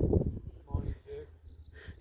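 Low rumble of wind on the microphone, with a few brief murmured words.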